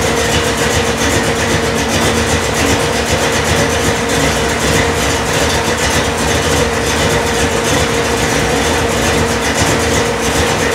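1973 Dodge Dart's engine, freshly fitted with a new cam, idling steadily with a hard, lumpy pulse.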